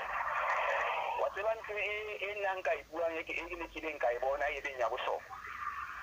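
Speech heard over a telephone line: a thin, narrow-sounding voice, after about a second of line hiss at the start.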